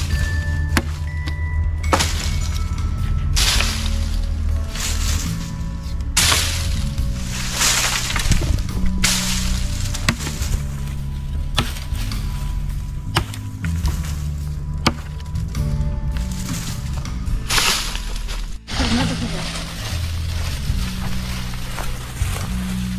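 A hatchet chopping and snapping dry branches on a wooden stump, with sharp strikes every one to three seconds, over background music with a steady bass line.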